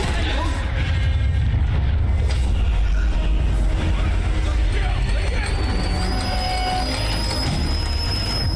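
Soundtrack of an animated war short: music and battle sound effects over a deep, steady rumble, with mechanical clanking. A thin, high whistling tone comes in about halfway through and holds.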